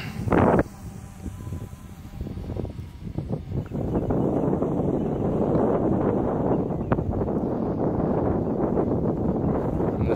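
Wind buffeting the microphone: a sharp gust about half a second in, then a steady heavy rumble that builds about four seconds in and carries on.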